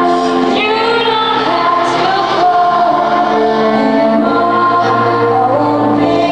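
A woman singing a ballad live with grand piano accompaniment, in long held notes. It is heard through the arena's sound system from far back in the audience.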